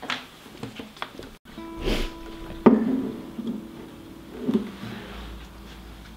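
Acoustic guitar being handled, with a knock on its body at the start. About three seconds in its strings are struck sharply, and the open strings ring on for a couple of seconds as they fade.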